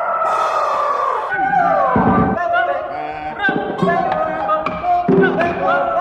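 Electroacoustic tape music: dense overlapping tones that slide up and down in pitch, mixed with voice-like fragments and short sharp clicks.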